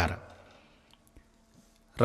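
A man's narrating voice ends a word, then a pause of near silence broken by two faint, short clicks.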